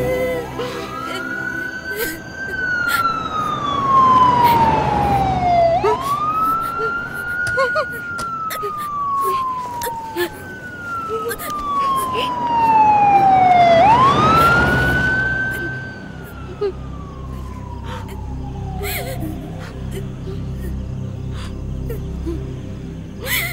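Wailing emergency-vehicle siren, its pitch sweeping up quickly and sliding down slowly, again and again, swelling loudest twice as it comes close.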